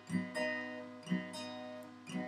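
Acoustic guitar played softly between sung lines: a few gentle strokes, the chords left to ring between them.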